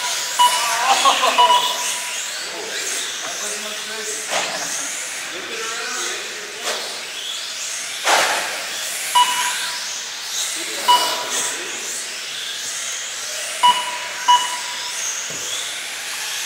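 Small 1/18 scale electric RC cars racing on carpet, their motors whining and rising and falling in pitch as they accelerate and brake. Short electronic beeps from the lap-timing system sound every few seconds as cars cross the timing line.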